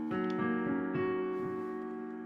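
Piano chord on a digital keyboard, struck once at the start and held so that it rings and slowly fades: the ii chord of the song's key, played while working out its chords by ear.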